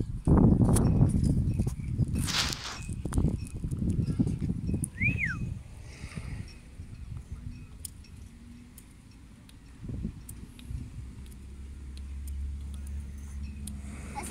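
Breathy rushes of air blown into cupped hands in a failed try at a hand whistle, with no clear note coming out. One brief rising-and-falling chirp follows about five seconds in.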